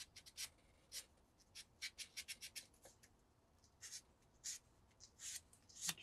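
Fine-grit sandpaper rubbed in short, gentle strokes along the edge of a small plastic model part, a faint dry scratching with each stroke, some strokes coming in quick runs. It is smoothing off the scratches left by the coarser 400 grit.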